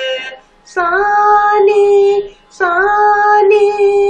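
A woman singing a Carnatic sarali varisai exercise in raga Mayamalavagowla, voicing the swara syllables with no accompaniment heard. After the end of one note, she holds two long notes of about one and a half seconds each, with a short breath between them.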